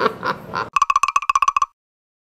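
Electronic call-button chime: a single-pitched warbling beep, pulsing about twelve times a second for just under a second and then cutting off sharply.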